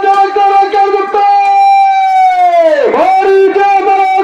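A man's voice over a loudspeaker PA, calling out on one pitch in a sing-song chant. Part way through he holds one long drawn-out note, which swoops sharply down in pitch near the end and then comes back up into the chanting.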